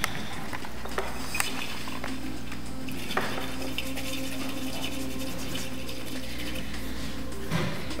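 A glass jar of methanol and lye crystals being handled and swirled to dissolve the lye into methoxide, giving a few light clinks and rattles. A steady low hum runs underneath.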